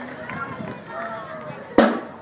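Scattered voices of people talking in the open after applause has stopped, with a single sharp knock near the end.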